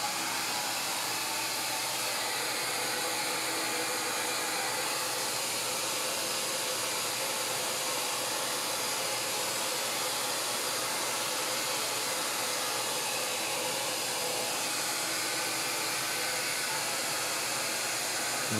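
Shaper Origin handheld CNC router with its spindle running, a steady whirring hiss that holds an even level throughout, during a pocketing cut.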